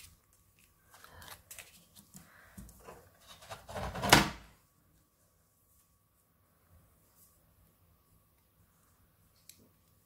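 Paper being handled on a desk, rustling for the first few seconds and ending in a louder crackling burst about four seconds in, then near quiet with a single faint click near the end.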